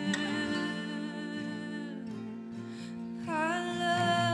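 A woman singing a slow, tender song with acoustic guitar: one long held note near the start, then a new note with a slight waver coming in about three seconds in.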